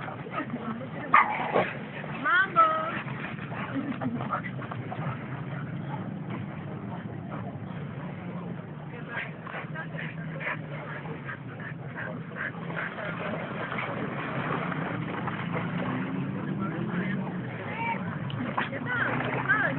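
Dogs playing rough, with short sharp yips and barks, the loudest about a second in and again about two and a half seconds in.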